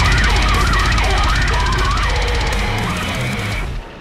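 Heavy metal riff from a band recording: low distorted guitars and drums under a high lead line that wavers up and down in pitch. The music cuts off abruptly just before the end and leaves a fading ring.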